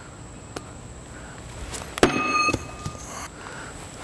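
A sharp metallic clank about halfway through, ringing briefly at a few clear pitches before fading after about a second, with a faint click before it.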